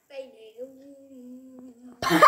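A voice singing: a short sung phrase, then one note held steady for about a second and a half.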